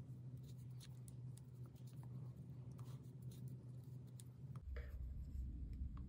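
Faint rubbing and light clicks of a crochet hook pulling acrylic yarn through stitches, over a steady low hum.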